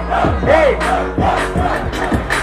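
A crowd and an MC on a microphone shout "ei!" in time, with the loudest shouts in the first second, over a trap-funk beat with a steady bass line and kick drum.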